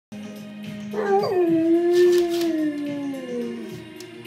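A dog howling along to music. One long howl starts about a second in, holds, then slowly sinks in pitch and fades near the end, over a steady held musical note.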